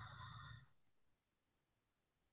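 Near silence: a faint trailing noise that cuts off under a second in, then dead silence.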